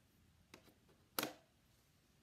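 Letter tiles clicking as they are set down on a metal baking tray: a faint click about half a second in, then a louder, sharper click just after a second.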